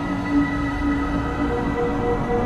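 Ambient electronic music, generated mainly with Koan Pro: several sustained synth tones held steady over a dense, low rumbling drone.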